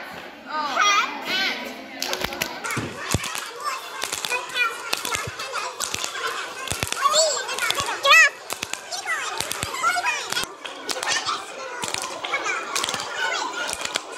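A circle of teenage girls playing a hand-clapping game: quick, irregular hand claps and slaps under overlapping voices calling out, with one loud shout a little past the middle.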